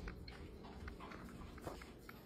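A large dog lapping water from a kitchen sink: faint, irregular wet clicks.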